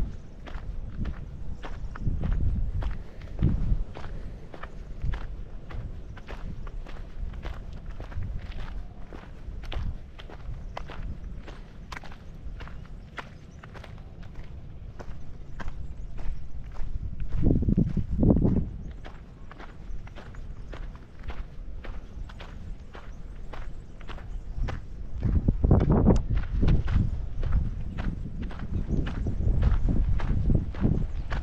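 Footsteps crunching on a gravel path, about two steps a second, recorded by a body-worn action camera. Low rumbling swells come twice, about halfway through and near the end.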